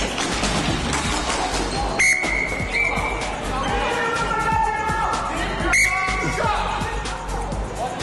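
Referee's whistle blown sharply about two seconds in, with a short second blast just after and another blast near six seconds, stopping play for a penalty call.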